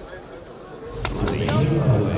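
Arena background between rounds: a low murmur of voices, with a quick run of sharp clicks or taps about a second in.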